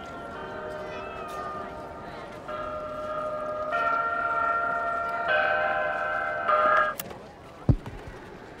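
Chime-like electronic music from a portable stereo: sustained bell-like chords that change in steps about every second, cutting off abruptly about seven seconds in. A single thump follows near the end.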